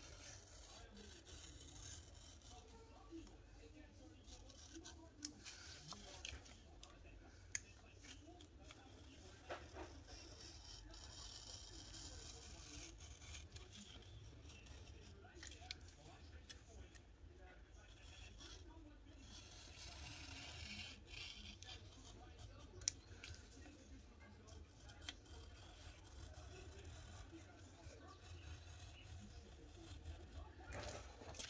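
Faint scratching of a craft knife blade drawn through paper on a cutting mat, with a few light clicks from handling the knife and paper.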